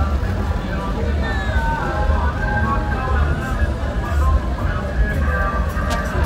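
Mexican banda-style brass band music with a sousaphone bass line, mixed with crowd voices and a vehicle passing.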